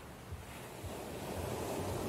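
Ocean surf breaking and washing onto a beach, the wash swelling louder about a second in.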